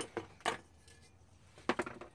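A few light clicks and knocks of hard objects being handled on a worktable: one at the start, one about half a second in, and a quick rattle of several near the end.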